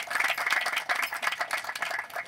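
A small audience applauding, dense clapping that thins out near the end.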